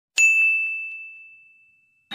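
A single ding sound effect: one high, clear tone struck about a fifth of a second in and fading out over about a second and a half.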